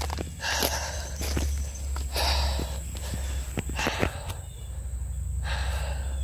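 A man breathing hard in long, heavy breaths after exertion, with footsteps and the occasional snap of twigs and dead branches as he pushes through fallen brush.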